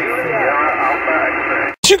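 Voices of calling stations coming over the speaker of an ICOM IC-756 Pro II HF transceiver as thin, narrow-band single-sideband radio speech, overlapping in a pileup. It cuts off abruptly near the end.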